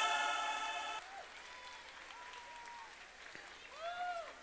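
The held final chord of the dance music fades out about a second in, leaving faint audience applause with a few voices calling out.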